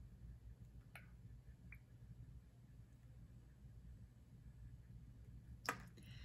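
Near silence: low room tone with a couple of faint clicks, then a sharper tap near the end as a plastic pipette is set down on the benchtop.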